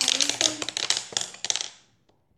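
Close crackling and clicking handling noise right at the microphone: a fast, irregular run of sharp clicks that fades out near the end.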